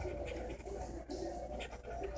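A coin scraping the coating off a lottery scratch-off ticket in short strokes, with a low cooing underneath.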